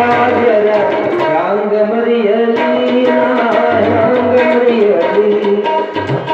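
Live Kannada devotional song: a harmonium melody with tabla, the bass drum thudding under the sharper strokes, and a man singing.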